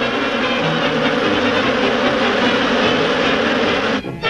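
Loud, steady rushing noise with sustained orchestral notes held under it.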